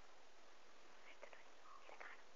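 Near silence: a steady faint hiss, with a few faint, brief soft sounds about a second in and again near the end.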